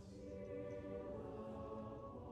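A school music ensemble performing slow, sustained chords, heard distantly from the back of a large auditorium.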